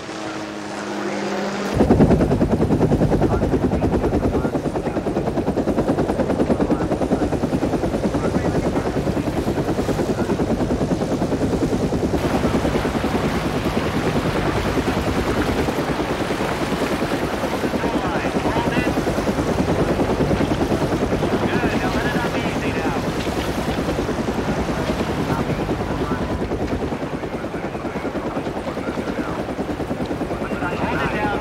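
Helicopter rotor chopping steadily. It cuts in abruptly about two seconds in.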